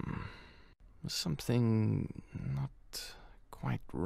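A cartoon character's wordless vocal sounds: short hums, and a longer wavering one from about one and a half seconds in.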